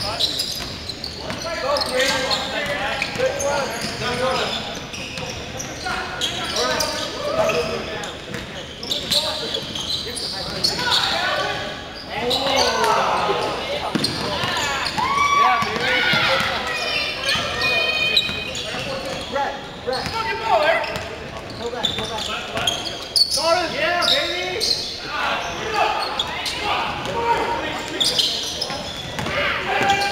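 A basketball game on an indoor hardwood court: the ball bouncing repeatedly on the floor amid indistinct shouts and calls from players, all echoing in a large gym.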